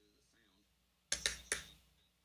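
Near silence, then two sharp knocks a little over a second in, about half a second apart, each dying away quickly.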